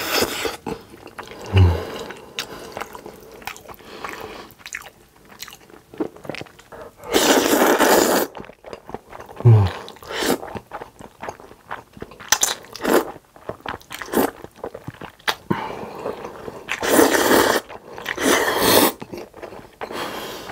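Close-miked eating of black bean noodles: wet chewing and mouth sounds, with about a second of loud slurping around seven seconds in and twice more near the end. Two short low thumps come early and again at about the middle.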